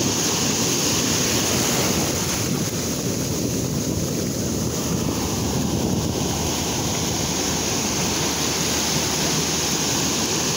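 Ocean surf breaking and washing up the sand at the water's edge: a steady rush of foaming water.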